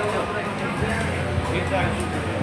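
Indistinct voices and background chatter over a steady low hum, with a voice saying "da" near the end.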